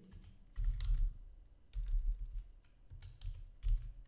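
Typing on a computer keyboard: keystroke clicks in several short bursts, each burst carrying dull low thuds from the keys bottoming out.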